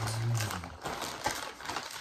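Plastic mailing bag crinkling and rustling as it is handled and opened, a rapid, irregular run of small crackles.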